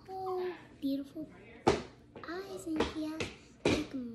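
A child's high voice making wordless sounds, broken by about four sharp knocks as a plastic baby doll is handled.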